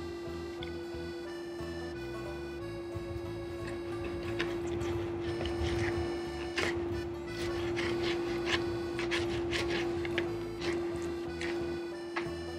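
Background music over a steady hum, with a run of sharp clicks and scrapes of a steel knife and fork against a plate from about four seconds in, as roast beef is cut.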